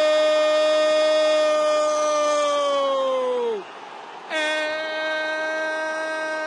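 A Brazilian TV football commentator's drawn-out "Gol!" cry, held on one pitch for several seconds, calling a goal. It sags in pitch and breaks off about three and a half seconds in, and after a breath a second long held note begins.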